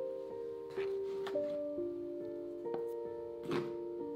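Gentle background piano music, with held notes that change about once a second. Three faint, brief rustles or knocks come through, the last and clearest about three and a half seconds in.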